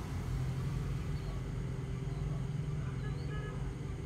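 A vehicle engine idling steadily: an even, low hum that does not change.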